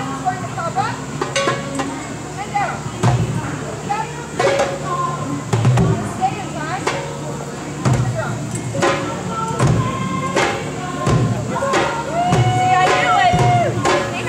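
Hand drum struck in single, spaced strokes, about one a second, under voices, with one held vocal note near the end.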